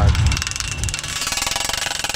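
Pneumatic Rhino PD-140 post driver hammering a steel fence post, a fast, even run of many blows a second. The tractor engine runs low beneath it for the first half second.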